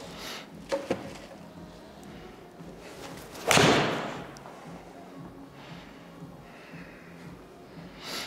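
A PXG 0317 ST blade five iron striking a golf ball on a full swing: one sharp, loud strike about three and a half seconds in that dies away over about half a second. The shot is judged sweet-spotted.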